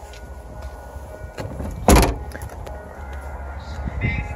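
A Nissan Qashqai's rear liftgate being shut: one loud thump about two seconds in.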